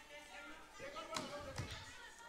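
Faint off-microphone voices of members in the chamber, with two dull thumps a little over a second in.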